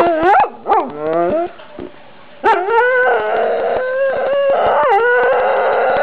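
Dog howling: a few short calls that rise and fall in the first second and a half, then after a brief pause a long drawn-out howl from about two and a half seconds in.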